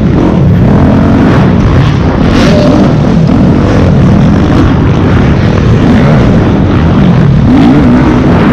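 Motocross bike engine close to the camera, loud throughout, its pitch rising and falling as the throttle is worked on the supercross track.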